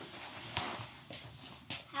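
A quiet pause: faint room noise with a few soft clicks.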